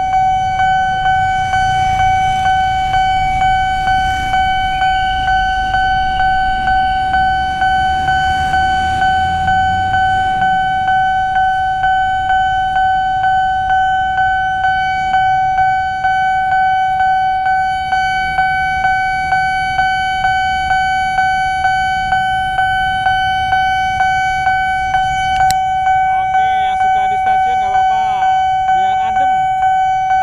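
Railway level-crossing warning bell ringing on one pitch, struck again and again at an even pace: the signal that a train is approaching and the barriers are closed. Road traffic rumbles under it for the first several seconds.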